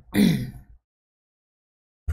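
A man's short vocal sound, falling in pitch and lasting under a second, then dead silence.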